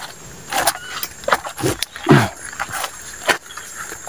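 Footsteps and the rustle and crackle of leaves and twigs as someone pushes through forest undergrowth, in irregular strokes.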